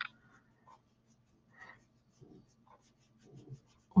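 Sponge-tipped applicator rubbing soft pastel (PanPastel) onto paper in faint, short, intermittent strokes, with a small click at the start.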